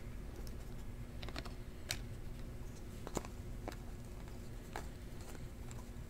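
Scattered light clicks of a stack of glossy trading cards being flipped through by hand, about a dozen irregular ticks over a faint steady low hum.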